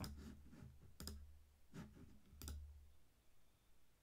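Faint single clicks at a computer, about four of them, roughly a second apart, over a low hum.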